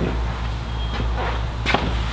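A steady low rumble under soft rustling of cotton T-shirts being folded and stacked on a table, with a single light tap near the end.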